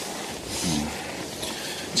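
Steady wind noise of a snowstorm, with a short murmured 'mm' from a person, falling in pitch, about half a second in.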